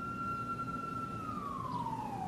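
A siren wail in the background: one tone that rises, holds for about a second, then slides slowly down.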